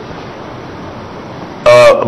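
A pause in a man's speech filled by a steady low hiss of recording noise; his voice comes back loudly near the end.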